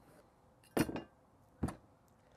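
Two short knocks of small hard objects handled and set down on a tabletop, about a second apart, the first slightly longer with a brief ring.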